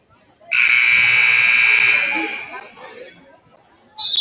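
Basketball scoreboard horn sounding once, a loud steady blast of about two seconds that starts suddenly about half a second in and fades out in the gym's echo. With both teams in their bench huddles, it marks the end of a timeout.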